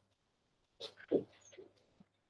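A short murmured voice sound, a little over a second long, beginning just under a second in after a moment of silence, over a faint electrical hum.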